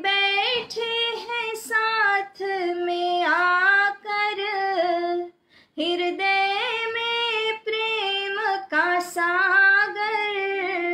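A woman singing a devotional bhajan solo, in long held and ornamented notes, with a short break for breath about halfway through.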